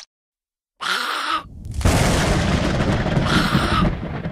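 Explosion-type sound effect in a stop-motion edit. It begins out of dead silence with a short burst about a second in, then a long, loud rumble from about two seconds in, with the same short burst heard again near the end.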